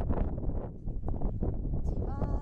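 Wind buffeting the microphone of a handheld camera carried outdoors, an uneven low rumble.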